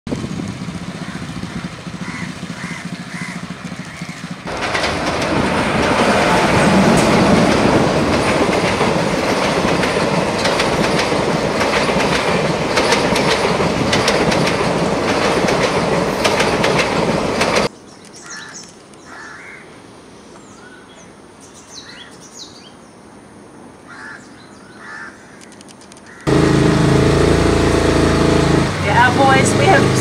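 A run of cut-together outdoor sounds: a long stretch of loud, even rushing noise, then a quieter stretch with faint short high calls, and near the end a boat's engine running with a steady low hum as a voice begins.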